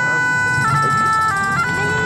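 Bagpipe playing a slow melody of long held notes over a steady drone, the tune stepping to a new note a few times.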